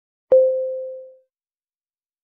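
A single electronic beep, one steady tone that starts sharply and fades away over about a second: the signal to start speaking for a timed test response.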